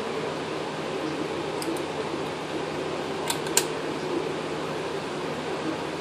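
Small sharp metal clicks from a steel pick scraping and catching in the brass inlet fitting of an air hose reel while the O-rings are picked out: one about two seconds in, then two in quick succession past halfway. A steady whirring background noise runs under them.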